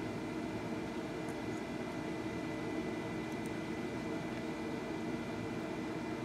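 Steady background hum and hiss with a faint, thin high whine, unchanging throughout; no distinct event stands out.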